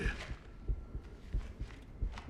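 Low, heartbeat-like thudding pulse from a suspense film soundtrack, about one thud every two-thirds of a second, over a faint steady hum.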